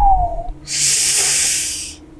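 A man's short falling whistle, followed by a long hissing breath out through the teeth that fades away: a wordless reaction before answering.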